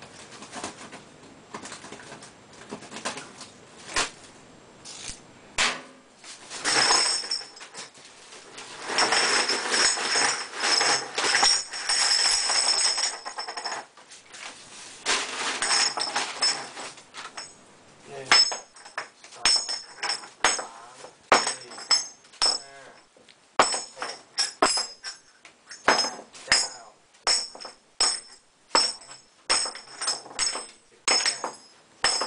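Cast-iron formwork wing nuts clattering against each other and the concrete floor as they are tipped out of a sack: a dense run of ringing metal clinks through the middle. In the second half, single clinks, about one or two a second, as pieces are set down one by one onto the pile.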